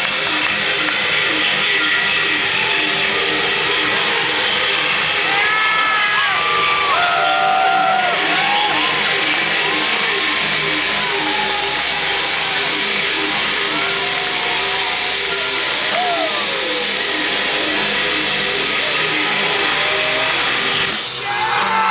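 Live rock band playing loud, with heavily distorted electric guitars holding dense sustained chords and drums underneath. Bending, sliding lead-guitar notes ride over it from about five to eight seconds in.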